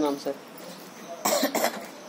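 A person coughing once, briefly, a little over a second in, right after a few spoken words.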